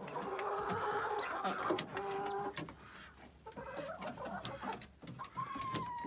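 Hens clucking in several short stretches, with a higher, held call near the end.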